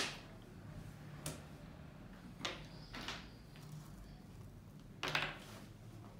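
Fingertip tracing letters in a tray of fine coloured sand: short, scratchy swishes, about five strokes, with a faint steady low hum beneath.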